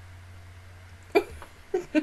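A woman bursting out laughing about a second in: a sharp first burst, then short breathy 'ha' pulses, over a faint steady low hum.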